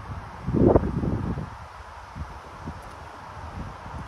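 Wind buffeting the microphone outdoors, with one strong low gust rumble about half a second in, then a quieter steady rumble.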